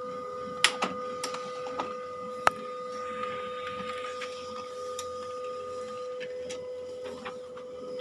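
HP LaserJet M1005 MFP laser printer running through a copy job, with a steady mechanical tone and a higher tone that stops about six seconds in. Several sharp clicks come from the mechanism, the loudest about two and a half seconds in.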